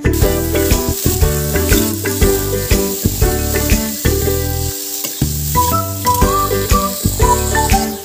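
Whole jujube fruits sizzling as they fry in a hot pan, stirred now and then with a metal spatula, under background music with a light melody.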